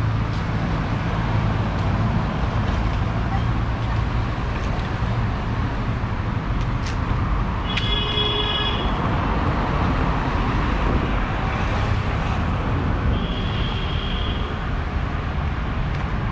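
City street traffic ambience: a steady rumble of passing cars and motorbikes. A vehicle horn honks for about a second about eight seconds in, and a fainter, higher tone follows near the end.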